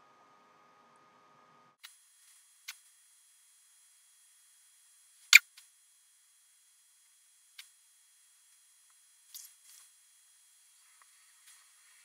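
A few short, sharp clicks, likely from a computer mouse, spread over near-silence. The loudest comes about five seconds in, and a faint steady high whine sits underneath from about two seconds in.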